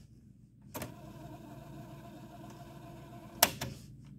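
Technics RS-D180W cassette deck: a transport key clicks down about three-quarters of a second in and the tape fast-forwards with a steady motor whir. A sharper key click stops it about three and a half seconds in.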